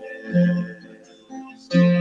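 Acoustic guitar strummed as accompaniment to a folk song, chords struck about a third of a second in and again near the end and left to ring between sung lines.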